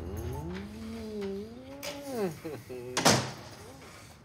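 A couple kissing, with a long humming murmur that glides up and back down, followed just after three seconds in by a short sharp noise of the front door opening.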